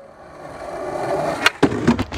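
Skateboard wheels rolling on concrete and growing louder, then a few sharp clacks about a second and a half in as the board is popped and lands on a ledge.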